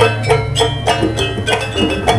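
Live jaranan gamelan music: pitched metal percussion struck in a quick, even rhythm of about four strokes a second, each stroke ringing briefly, over a steady low tone.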